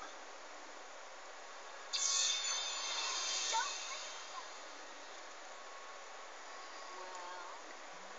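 Cartoon episode audio played from a TV and picked up faintly by the room microphone: a short noisy burst about two seconds in, then faint snatches of character voices.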